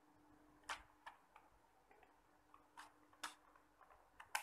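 Scissors snipping a thin plastic transparency sheet: a few faint, sharp clicks at uneven intervals, the clearest about three quarters of a second in and around three seconds in.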